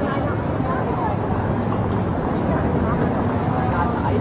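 Busy street ambience: indistinct chatter of passers-by over passing car traffic and a steady low rumble.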